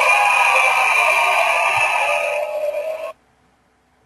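The closing soundtrack of an old black-and-white comedy film clip, a dense, steady wash of sound without clear speech, cutting off abruptly about three seconds in, then silence.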